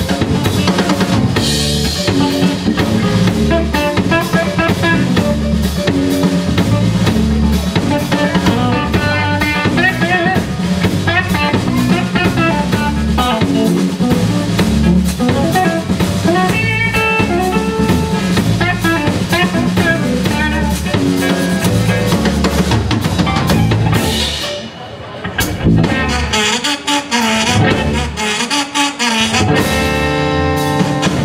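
Live zydeco-blues band playing an instrumental passage on electric guitar, bass, keyboard and drum kit. About 25 seconds in the band breaks off for a moment, then plays a few seconds of sparse, stop-start hits before the full groove comes back near the end.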